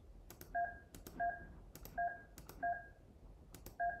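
Touch-tone (DTMF) keypad beeps: five short two-note tones, spaced roughly half a second to a second apart, each just after a soft click. They are the digits of a numeric meeting passcode being keyed in and sent down a video-conference call.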